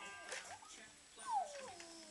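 A baby's short high squeal that falls in pitch, a little past a second in.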